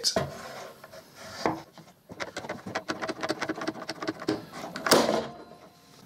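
Quick-release squeeze clamp, reversed as a spreader, ratcheting in a rapid series of clicks as its trigger is pumped. About five seconds in there is a sharp crack as the biscuited melamine particleboard glue joint gives way under the load.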